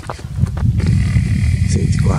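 Wind buffeting the camera microphone: a loud, uneven low rumble that builds about half a second in and carries on.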